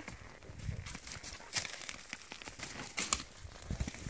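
A horse stepping over and through dead birch branches and brush: twigs crackling and snapping under its hooves, with a few dull hoof thuds.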